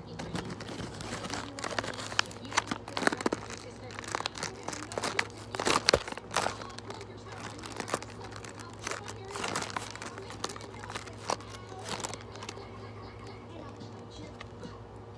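A printed package being handled and crinkled: a run of sharp crackles, loudest and busiest in the first half, thinning out near the end, over a steady low hum.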